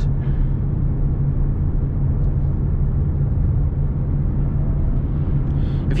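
Steady low drone of engine and road noise inside the cabin of a 2016 Ford Mustang EcoBoost, with its turbocharged 2.3-litre four-cylinder, cruising at an even speed.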